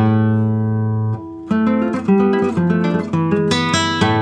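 Nylon-string classical guitar played fingerstyle: a chord rings out for about a second, there is a brief drop, then plucked notes resume and grow busier.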